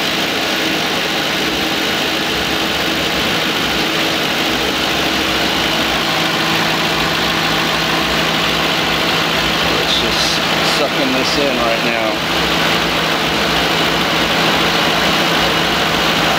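A Ford Crown Victoria's 4.6-litre V8 idling with the A/C compressor engaged and staying on, drawing refrigerant in during a recharge. The sound is a steady engine hum, and a low steady tone joins about six seconds in.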